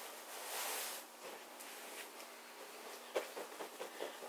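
Faint rustle of bedding fabric as a pillow is pulled out of its pillowcase, swelling briefly about half a second in, with a few light taps near the end.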